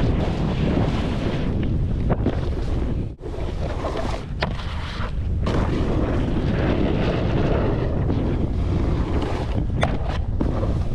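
Wind rushing over an action camera's microphone as a snowboard slides and carves down a groomed run, the board's edge scraping over chopped-up snow. The noise drops briefly about three seconds in.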